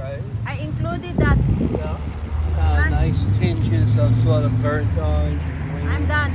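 City street traffic: a vehicle engine's low hum builds about two seconds in and holds steadily, with voices over it.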